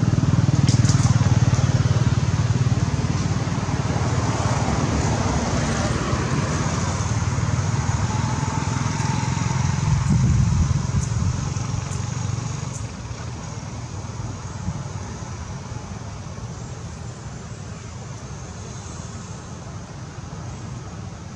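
A motor vehicle's engine running, louder about a second in and again around ten seconds, then fading away.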